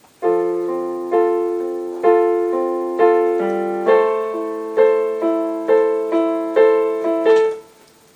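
Yamaha digital piano playing a slow phrase of right-hand chords over held left-hand bass notes, with a new note struck about every half second. The playing stops about half a second before the end.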